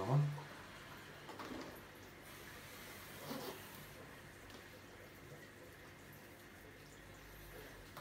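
Faint, steady water sound of a running aquarium, with a few soft knocks of a clear plastic siphon hose being handled.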